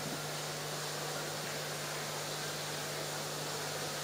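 Steady hiss with a low, steady electrical hum underneath: the background noise of an amplified sound system, with no voices.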